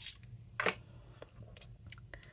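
Quiet handling of a fountain pen's small plastic parts as its converter is pulled off the nib unit: a few light clicks, the sharpest about two-thirds of a second in, with fainter ones later.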